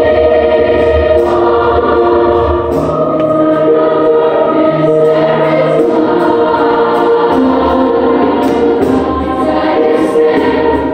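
A youth choir singing, holding long notes in several voice parts at once.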